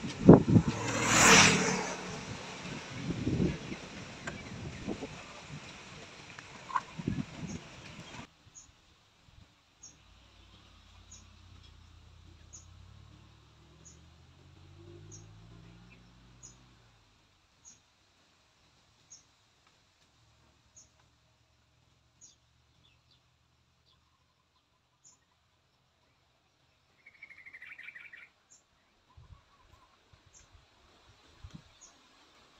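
Outdoor noise with wind rushing on the microphone for the first eight seconds, loudest about a second in. It then cuts to quiet ambience: faint high chirps repeat about every second and a half, a faint engine hum rises and falls, and a short bird call comes near the end.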